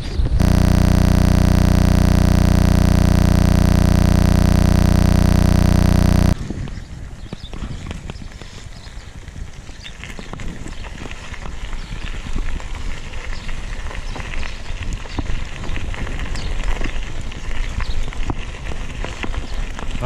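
A loud, unchanging noise fills the first six seconds and cuts off suddenly. Then a mountain bike's Maxxis knobby tyres crunch over a gravel path, with many small clicks and rattles from the bike, picked up by a handlebar-mounted camera.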